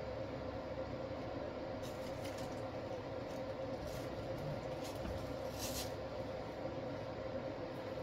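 A steady hum, with a few faint, brief rustles from artificial flower stems being handled and pushed into an arrangement. The clearest rustle comes a little before six seconds in.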